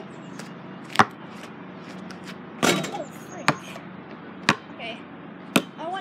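Basketball hitting the paved driveway and the low hoop: five sharp thuds about a second apart, with a longer, louder hit a little before the middle.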